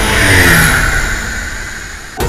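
Propeller plane flying low past, its sound swelling to a peak about half a second in and falling in pitch as it passes, then fading away.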